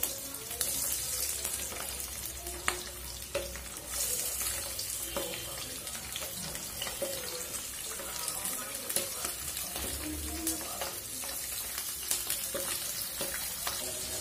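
Small whole fish frying in hot oil in a non-stick pan, a steady sizzle, with scattered clicks and scrapes of a spatula against the pan.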